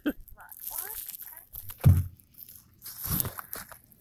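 Handling noise from a phone camera being picked up and moved: rustling and light bumps, one low bump about two seconds in, with a faint voice in the background early on.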